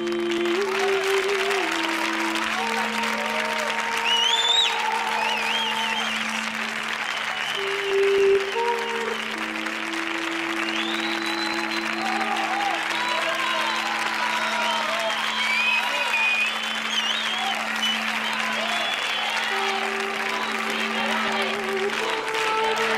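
Audience applauding and cheering, with whoops that rise and fall in pitch, over slow music with long held notes.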